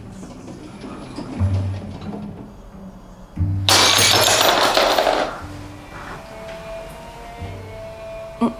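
A glass object hits a hard floor and shatters about halfway through: a loud, sudden crash with tinkling pieces that dies away over a second or so. Background music with low bass notes runs underneath.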